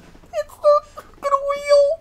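A man's high-pitched, squealing laughter: a few short squeaks, then one long held note near the end.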